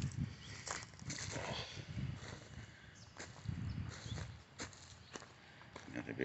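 Footsteps on dry dirt and wood-chip mulch, an uneven series of soft steps with a few sharp clicks scattered through.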